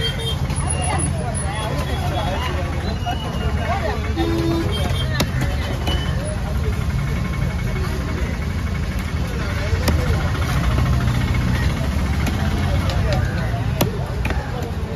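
Busy outdoor market din: a steady low rumble under background voices, with a few sharp knocks of a heavy knife chopping fish on a wooden block.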